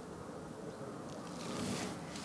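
Faint steady wind noise on the microphone, with a short louder hiss about one and a half seconds in.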